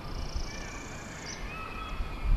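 A bird calling outdoors: a high trill that rises slightly and stops a little over a second in, with a few thin, faint whistled notes beneath it.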